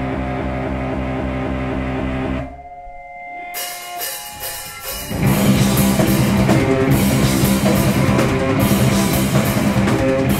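Live rock band on amplified guitar, bass and drums: a repeating riff plays, breaks off about two and a half seconds in to a few held, ringing guitar notes, then the full band with drums and cymbals comes back in loud about five seconds in.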